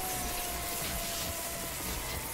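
TV sound effect of red superhero lightning: a steady electric hiss with a held tone underneath that sinks slowly in pitch.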